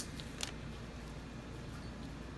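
A sharp click as a handheld flashlight knocks against a granite countertop, then a fainter tick about half a second in, over quiet room tone.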